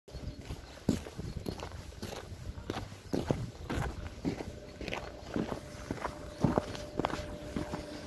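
Footsteps of a person walking over packed snow and slush, about two steps a second.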